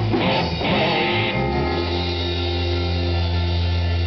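Live rock band with electric guitar and drum kit playing. About a second and a half in, the drum hits stop and a single chord is left ringing steadily.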